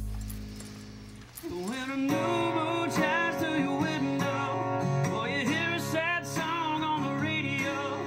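A man singing a country song to his own acoustic guitar; the voice comes in about a second and a half in over the strummed chords. The singing is judged a little pitchy by the listener at the desk.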